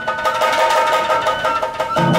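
Japanese kagura accompaniment: a steady high flute melody over repeated drum strokes.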